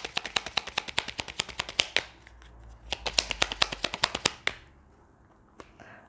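A deck of tarot cards being shuffled by hand: a quick run of card clicks for about two seconds, a short pause, then another run of about a second and a half, after which the shuffling stops with only a couple of single clicks.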